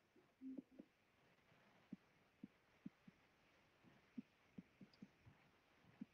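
Near silence broken by faint, short taps every half second or so: a stylus tapping on a tablet screen while handwriting.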